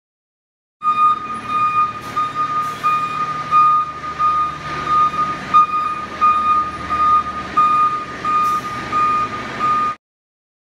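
A fire engine's reverse alarm beeping about twice a second over the truck's running diesel engine as it backs into the station bay. It starts about a second in.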